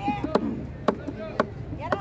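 A large knife chopping a whole fish crosswise into steaks on a wooden chopping block: four sharp, evenly spaced chops, about two a second.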